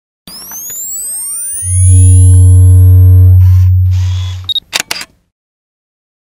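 Synthesized logo-sting sound effect: rising pitch sweeps build into a loud, deep bass tone held for about three seconds under a few steady higher tones. Near the end comes a quick run of sharp camera-shutter clicks, then the sound cuts off.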